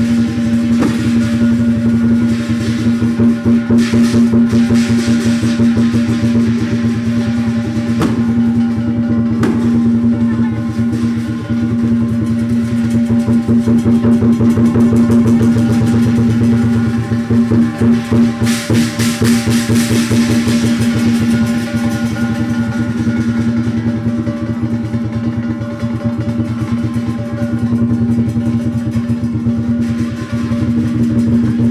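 Chinese lion dance percussion: drum, cymbals and gong played in a fast, unbroken rhythm over a steady ringing tone.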